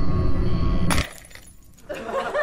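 Low rumbling outro music, cut off about a second in by a single glass-breaking crash: the sound effect of a CRT monitor screen cracking.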